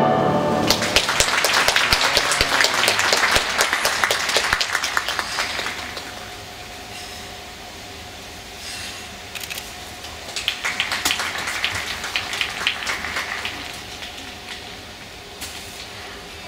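Orchestral skating program music ending, then audience applause that dies down after about six seconds, with a second round of clapping about ten seconds in.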